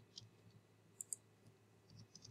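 Near silence with a few faint clicks from a computer mouse and keyboard, two of them close together about a second in.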